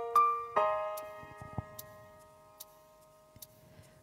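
Backing-track keyboard intro: electric-piano chords struck in the first half second, then left to ring and fade away over about three seconds, with a few faint ticks.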